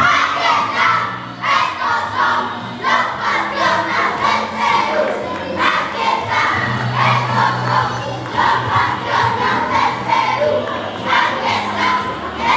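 Many children's voices shouting and chanting together in loud, pulsing bursts.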